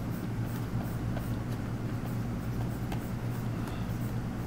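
A steady low electrical hum of room noise, with faint light scratches and ticks of a stylus being drawn across a graphics tablet.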